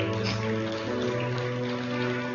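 Soft live worship music from a church praise band: sustained chords held steady, moving to a new chord about a second in.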